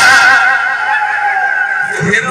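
A male bhajana singer's voice through a PA, holding one long high note with a wavering vibrato. The low percussion drops away about half a second in, leaving the voice and the held accompaniment notes.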